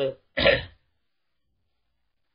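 A man clears his throat once, a short harsh burst about half a second in, just after finishing a word.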